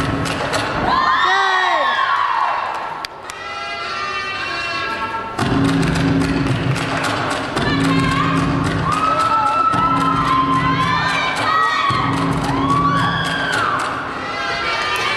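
Floor-exercise routine music playing with a steady beat, while teammates and spectators cheer and shout encouragement over it. A single thud about three seconds in.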